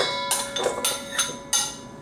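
A metal spoon knocks diced nectarines out of a ceramic bowl into a stainless steel mixing bowl. A sharp clink at the start leaves a ringing tone that lasts about a second and a half, and about five lighter taps follow.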